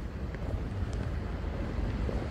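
Wind buffeting the microphone with a steady low rumble, over faint outdoor street ambience.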